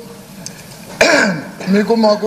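A man clearing his throat once, a short rough burst about a second in, before his speech resumes.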